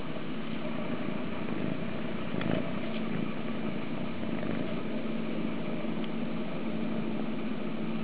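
Kitten purring steadily in a continuous low rumble while asleep and cuddled on a lap.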